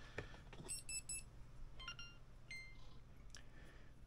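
Insta360 GO 3 camera giving its electronic power-on beeps, faint: a quick run of about four short high beeps a little under a second in, then a few more tones about a second later. This is the sign that the camera has switched itself on.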